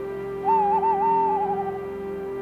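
Background score: a sustained synthesizer chord, with a wavering, theremin-like lead tone that enters about half a second in and trails off with a slight fall before the end.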